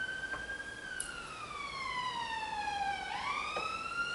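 Emergency-vehicle siren wailing: its pitch edges up, slides slowly down from about a second in, then climbs back up near the end.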